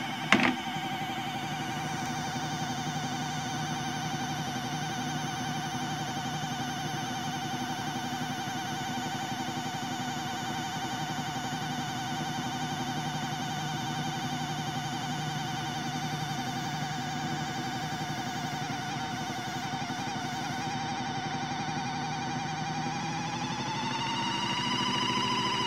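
Small electric motor of a modified Miele toy washing machine whining steadily as the soapy, water-filled drum turns. There is a sharp click about half a second in. Near the end the whine rises in pitch.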